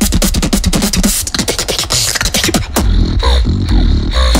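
Solo vocal beatboxing into a handheld microphone: a fast, dense run of sharp percussive clicks and hits, then about three-quarters of the way in a deep sustained bass comes in under short gliding pitched sounds.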